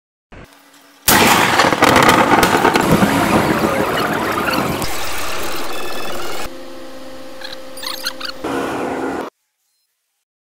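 Street and vehicle noise from amateur dashcam and phone footage. It comes in suddenly and loud about a second in, then cuts abruptly to quieter clips with a steady hum, and stops suddenly near the end.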